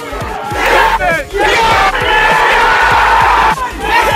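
Football stadium crowd roaring and cheering a goal, many voices yelling at once. It swells about half a second in and is loudest from about a second and a half in until near the end.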